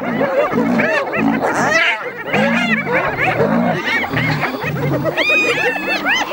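A clan of spotted hyenas calling all at once in a dense, overlapping chorus of rising-and-falling whoops, yelps and squeals, with deep pulsed growling repeating about twice a second underneath. This is the excited calling of a hyena mob confronting lions over a kill.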